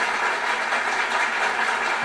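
A steady, even hiss of background noise with no clear pitch and nothing sudden in it.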